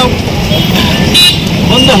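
Road traffic noise from a busy street, with a short vehicle horn toot about a second in. A man starts speaking near the end.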